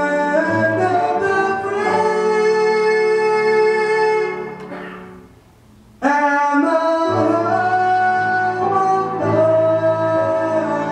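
Live vocal music: singers holding long notes over electronic keyboard chords. The music dies away about four to five seconds in, then starts again abruptly about six seconds in.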